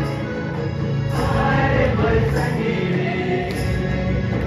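Mixed choir of men and women singing a gospel song together, holding sustained notes.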